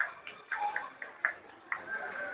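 A few short, sharp taps or clicks at an irregular pace, about six in two seconds.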